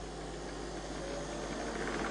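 Steady low hum and hiss of a small smoke wind tunnel running, growing slightly louder toward the end.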